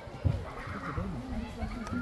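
Indistinct voices of people talking, with a single sharp knock about a quarter second in.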